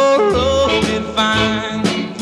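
Chicago blues record: a band with electric guitar plays long, sliding lead notes over steady bass notes.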